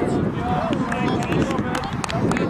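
Children and adults calling out over a youth football match in play, in short high-pitched shouts, with wind rumbling steadily on the microphone.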